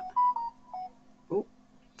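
A mobile phone's alert tone: a quick little melody of about five electronic beeps at a few different pitches, lasting under a second.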